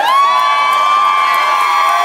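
Audience cheering and whooping. Several voices glide up into long, held "woo" calls over the general cheer.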